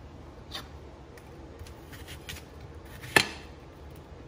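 Faint knocks and rubbing of things being handled on a kitchen counter, with one sharp click about three seconds in.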